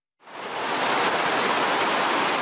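A steady, even rushing noise with no rhythm or pitch fades in about a quarter second in and holds level.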